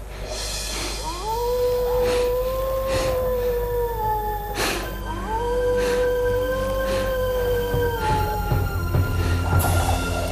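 A wolf howling twice. Each howl is one long call of about three and a half seconds that rises at the start, holds its pitch and sags at the end, with a short gap between the two.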